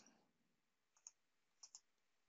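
Three faint computer mouse clicks against near silence: one about a second in, then a quick pair near the end.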